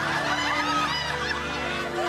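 Background music with a laugh track of people laughing over it.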